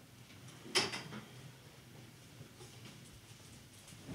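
Cloth handling: a heavy monastic robe being swung and wrapped around the shoulders, with one short, sharp rustling swish about a second in, then faint rustles.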